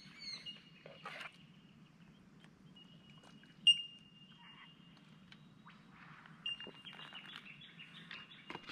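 Clinks of a utensil against a small metal camping pot, the loudest about three and a half seconds in, several ringing on briefly, with birds calling.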